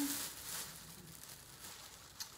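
Faint rustling and crinkling of a plastic bag being handled.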